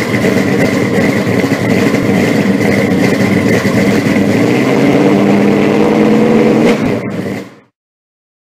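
A car engine running loudly and revving, with a steady whine above it. Its pitch rises a little about five seconds in, then the sound drops away about seven seconds in and fades out.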